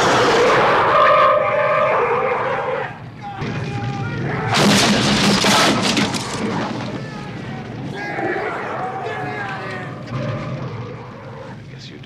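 Fire roaring from a flamethrower, with high wailing cries over it, and a loud blast of flame about four and a half seconds in.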